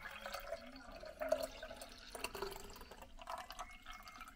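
Leftover coffee poured from a French press carafe into a small glass jar: a faint, uneven trickle of liquid.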